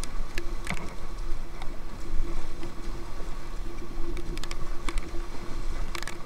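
River water rushing and splashing around an inflatable kayak running a riffle, with scattered sharp splashes and a steady low hum underneath.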